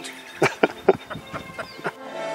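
A person laughing in a run of short, separate bursts.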